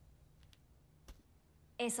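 Near-quiet room tone with three faint, short clicks in the first half, then a voice starts speaking near the end.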